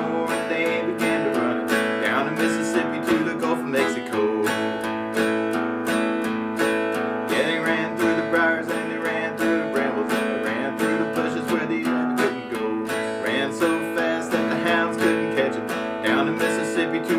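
Steel-string acoustic guitar strummed steadily in a brisk, even rhythm on A and E chords.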